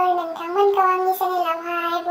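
A high voice singing, in long held notes that step up and down in pitch.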